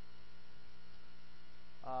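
A steady electrical hum with background hiss in the recording, with a man's voice starting again near the end.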